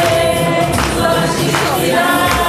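A choir singing together, with notes held for about half a second at a time.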